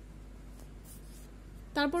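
Faint scratchy rustle of a finger moving on a paper textbook page, over a quiet room background.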